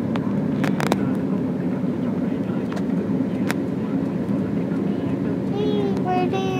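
Steady low road and engine rumble of a car driving, heard from inside the cabin.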